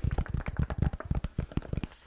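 Rapid fingernail tapping on a hardcover journal, a quick run of short, sharp taps, several a second.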